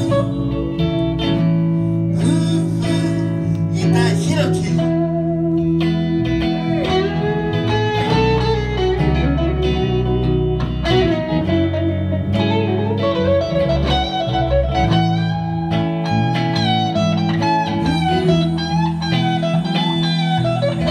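Live band playing a blues-tinged song on electric and acoustic guitars with bass, a lead melody line bending up and down in pitch over the steady accompaniment.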